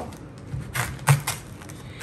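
A chef's knife cutting through a head of green cabbage on a wooden cutting board: several short, crisp crunching cuts.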